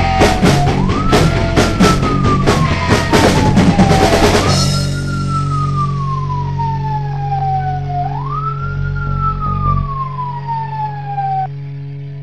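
Loud rock ending: drums crash until about four and a half seconds in, then a police-style wailing siren, rising quickly and falling slowly every few seconds, carries on over a held low chord that cuts off near the end.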